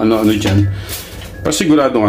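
A voice, with a metal pot lid clanking and scraping as it is set onto an aluminium cooking pot near the end.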